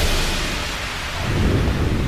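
Wind buffeting the camera microphone over the wash of water around a pedal boat, with the low rumble of the wind growing stronger a little past halfway.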